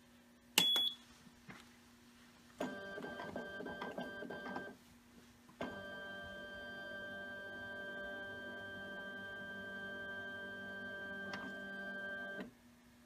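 A short electronic beep as the run key is pressed on a HistoPro 414 linear slide stainer, then the stainer's motorised transport running with a steady hum of several tones as it moves the slide carriers to the next station: about two seconds at first, then again from about halfway through.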